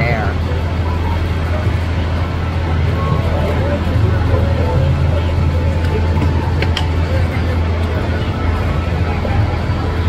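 Steady low rumble of an idling vehicle engine, with faint voices in the background.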